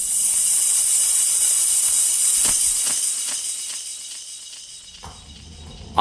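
A loud, high hiss that swells in, holds steady for a few seconds, then fades away: a sound effect bridging two scenes of a radio play.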